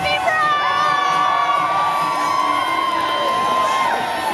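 Parade crowd cheering, with several high-pitched shouts and whoops held for a second or more over the noise of the crowd.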